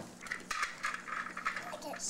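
Light clinks and knocks of bottles and containers being handled at an open refrigerator.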